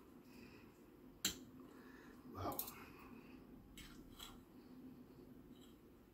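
A metal fork clicking against a china plate a few times while eating, with one sharp click about a second in as the loudest; otherwise quiet.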